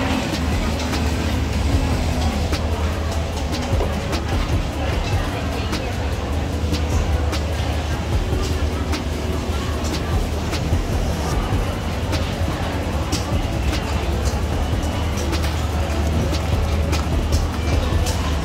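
Busy night-market ambience: a steady low rumble under a background of voices and music, with scattered light clicks and clatter.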